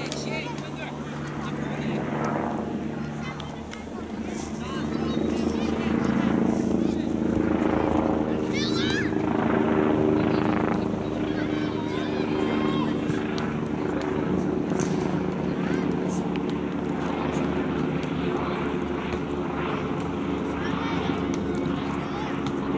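A steady low engine drone that grows louder for a few seconds in the middle, with shouts from players on the pitch over it.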